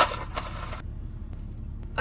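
A plastic straw pushed down through the lid of a plastic iced-coffee cup, a sharp click followed by ice cubes rattling inside the cup for just under a second, with fainter rattling near the end. A low steady hum sits underneath.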